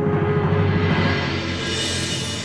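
Dramatic background music with a low drum rumble, building to a bright swell near the end.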